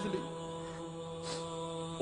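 A steady background vocal drone, a chant-like hum holding one chord without change. A short breathy sound comes about a second and a half in.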